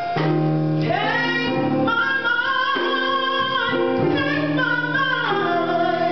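A woman singing a gospel song into a microphone, holding long, slightly wavering notes over an instrumental accompaniment.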